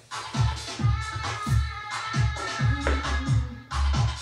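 An electronic dance-music mix with a steady, punchy kick drum, played back from a chrome cassette tape on a Technics RS-BX501 stereo cassette deck.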